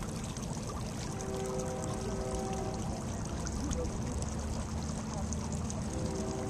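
Steady rushing outdoor noise, with faint held tones underneath.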